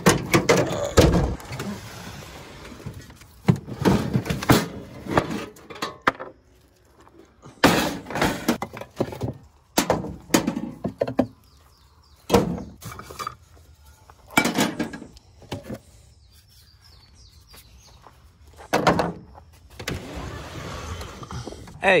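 A pickup truck's tailgate is unlatched and let down with a clunk, then a string of separate knocks and thunks follows as camping gear and a Coleman camp stove are moved about and set down on the tailgate.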